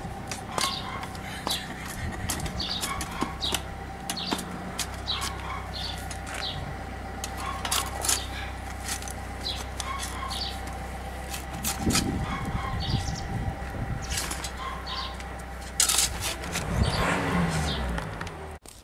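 A shovel scraping and scooping soil in a wheelbarrow, with short sharp clicks throughout and louder scrapes about twelve seconds in and again near the end.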